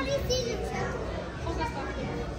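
Background voices of shoppers, children among them, talking and calling in a store, over a steady low hum.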